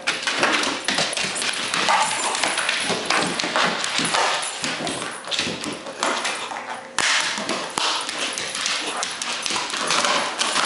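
Rottweiler chewing and worrying a plastic frisbee: a continuous jumble of clicks and scrapes of teeth on the plastic, mixed with the dog's own vocal noises.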